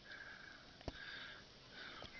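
Faint sniffing or breathing close to the microphone, in a few short puffs, with a single soft click about a second in.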